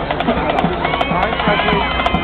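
Marching band percussion playing a steady rhythm of sharp clicks and knocks, with many voices calling out over it from about halfway in.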